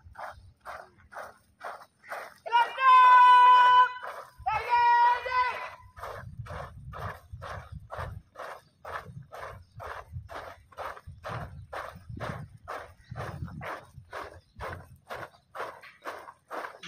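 Beats of a students' drill, about two a second, with two long drawn-out steady calls that rise above the beat about three and five seconds in.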